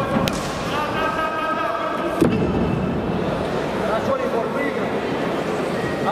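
Two sharp strikes land during a combat-sport bout, a light one just after the start and a louder one about two seconds in, over a steady chatter and shouting of spectators' and coaches' voices in the hall.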